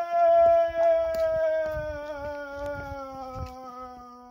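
A voice holding one long sung note that sinks slightly in pitch and fades toward the end, with faint knocks underneath.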